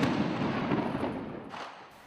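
The rolling, echoing aftermath of a heavy blast in an urban combat zone, a shell or explosion from the fighting. It fades away over about two seconds, with a fainter report about one and a half seconds in.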